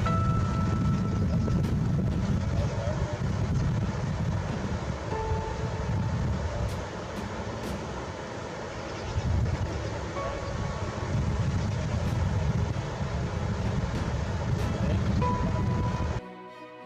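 Steady rushing roar of whitewater rapids, heavy in the low end, with wind rumbling on the microphone; it eases briefly about halfway through.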